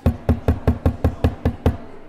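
A wooden gavel rapped rapidly on a block, nine sharp knocks at about five a second, calling a meeting to order.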